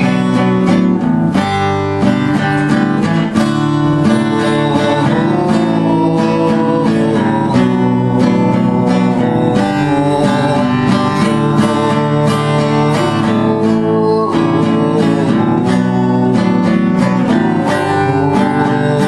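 Acoustic guitar strummed continuously, a run of chords ringing out with quick, even strokes.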